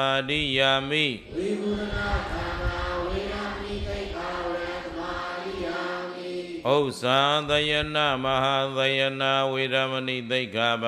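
A monk chanting a Pali precept in a slow, amplified recitation, ending about a second in; the congregation then repeats it together, many voices blending softer and less distinct for about five seconds, before the monk's single voice starts the next precept near the seventh second.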